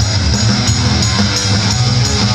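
Heavy metal band playing, with electric guitars and drum kit, cymbals struck in a steady beat.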